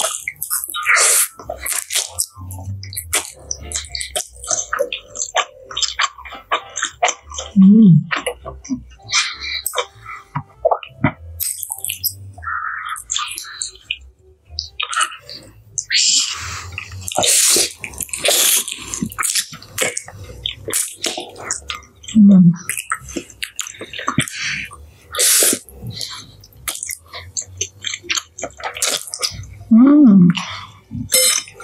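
Close-miked eating of spicy instant noodles: wet slurping, chewing and lip smacks in quick irregular clicks. Three short hummed "mm" sounds come through it, one about a quarter of the way in, one about two-thirds in and one at the very end.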